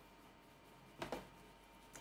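Near silence, with two faint brief scuffs about a second in from a stencil brush swirling lightly in small circles on a stencil.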